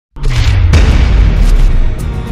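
Cinematic boom of a channel logo intro: a deep rumbling impact hits suddenly at the start, with a second sharp hit under a second in, and stays loud as it carries on.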